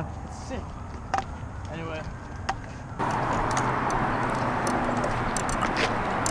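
Outdoor ambience while walking on a dirt path: a low steady rumble with a few light taps and a faint voice. About halfway it switches abruptly to a louder, steady rushing noise, like wind on the microphone.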